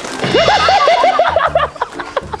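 A whinny-like call: a quick run of short, quavering pitched notes lasting about a second, over background music with a steady low beat.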